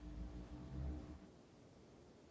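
Low rumbling from a headset boom microphone being moved close to the mouth, lasting about a second, then a faint steady hum of the call audio.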